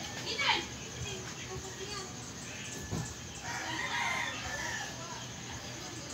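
A rooster crowing, a long call about three and a half seconds in, with a short falling call shortly after the start.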